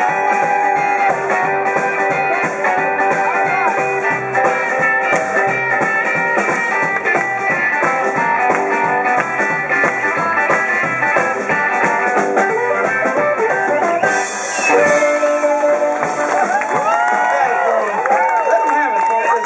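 Live blues band playing an instrumental passage: electric guitar, bass and drums, with a blues harmonica.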